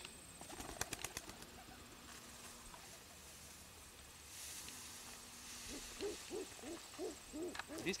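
Wings of a homing pigeon clapping and flapping in a quick run as it is thrown and takes off. A few soft, low, hoot-like sounds follow near the end.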